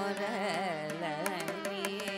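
Carnatic classical music in raga Thodi: a female voice sings wavering, heavily ornamented notes over a steady drone, with scattered percussion strokes.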